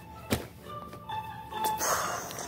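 Background music plays, with a single sharp thunk about a third of a second in and a rustling burst near the end as plush toys are handled and knocked about.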